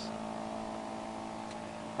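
Homemade pulse motor-generator running, a steady, even hum.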